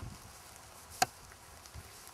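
A single sharp click about a second in, very brief, over faint outdoor background.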